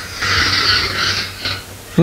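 A long, breathy exhale close to the microphone, a hissing breath with no voice in it, lasting about a second and a half with a couple of short breaks.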